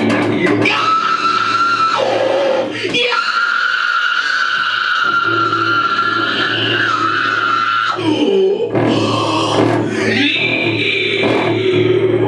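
Harsh screamed and grunted vocals shouted into a microphone over distorted bass guitar, a grindcore song played live in a small room, with a long held high scream through the middle and a brief break about eight seconds in.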